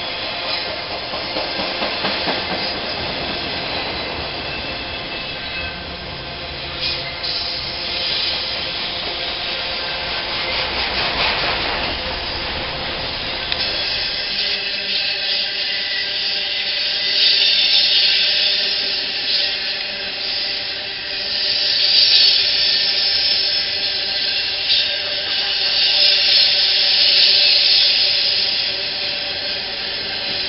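Intermodal freight train of truck trailers on flatcars rolling past at close range: a steady rumble and clatter of wheels on rail. About 14 s in the sound changes sharply, the low rumble dropping away and a higher hiss taking over.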